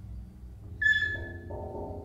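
Free improvised music for voice, electronics and everyday objects: a low steady drone, then, a little under a second in, a sudden high tone that fades within about half a second, followed by a cluster of mid-pitched tones that step up in pitch near the end.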